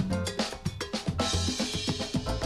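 Salsa band playing with the percussion to the fore: quick drum and cowbell strokes over a bass line, with a cymbal crash just after a second in.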